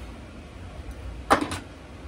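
Two sharp clacks close together about a second and a half in, from objects being picked up and handled on a workbench, over a steady low hum.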